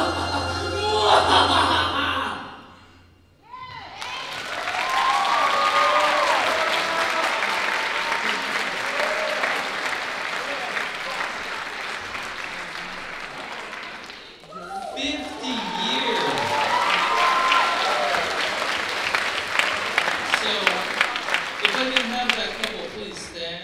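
A choir holds a final chord that stops about two and a half seconds in. After a brief silence, the audience breaks into applause with cheering, which swells again about halfway through and thins to separate claps near the end.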